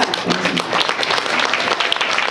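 Audience applauding, many hands clapping at once.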